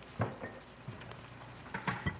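Ackee and smoked salmon sizzling faintly in a frying pan, with a couple of short knocks, one just after the start and one near the end.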